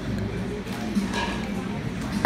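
Indistinct background voices over steady room noise.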